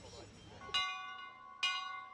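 Cast-iron bell on a yoke stand, rung by hand: two strokes about a second apart, each ringing on with steady overtones. It is the signal for the students to move to the next station.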